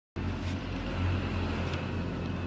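A steady low mechanical hum with an even whir over it, unchanging throughout.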